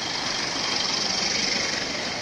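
Steady street traffic noise, swelling a little about a second in.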